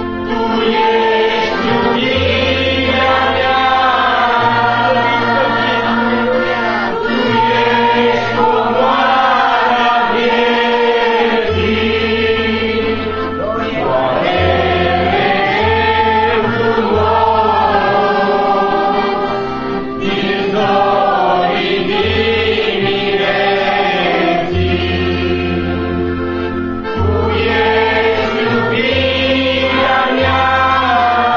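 A church choir or congregation singing a hymn together, with an instrumental bass line holding sustained notes that change every second or two.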